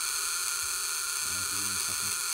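Steady electrical buzz and hiss, mostly high in pitch, from the high-voltage supply running a glowing Geissler gas-discharge tube.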